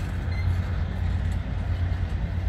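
Passenger train cars rolling past, making a steady low rumble of steel wheels on the rails.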